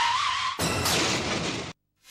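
Car tyres squealing in a skid, then about half a second in a loud crash lasting about a second that cuts off abruptly: a car-collision sound effect.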